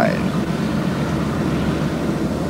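Helicopter running, a steady low drone with a fast, even flutter from the rotor.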